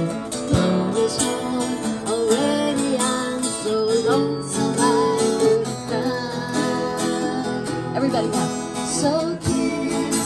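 Live folk duet: a mountain dulcimer and an acoustic guitar playing steadily together, with a woman singing over them.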